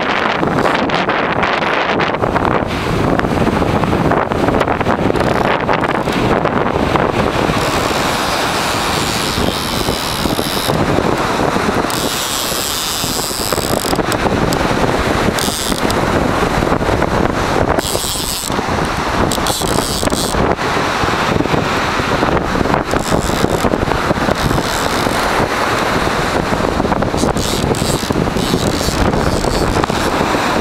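Strong wind blowing across the microphone, a loud, continuous rushing that rises and falls a little with the gusts.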